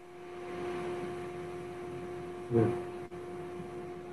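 Steady electrical hum with a faint hiss on an open microphone line. A man briefly says "yeah" about halfway through.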